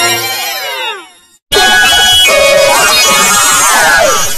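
Heavily pitch-shifted, layered copies of a cartoon soundtrack playing at once, a 'G Major'-style effects edit. A chorus of tones glides downward together and fades out about a second in. After a short gap, a loud, dense jumble of overlapping tones and downward swoops follows.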